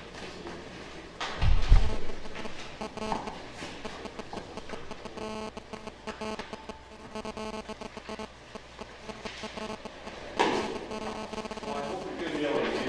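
Quiet room sound with a loud, low thump about a second and a half in, from the video camera being handled as it is turned, and a sharper knock near the end.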